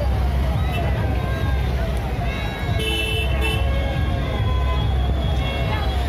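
Busy street procession din: crowd chatter over a heavy low rumble of vehicle engines, with a falling electronic siren-like tone repeating about twice a second. A vehicle horn sounds briefly about halfway through.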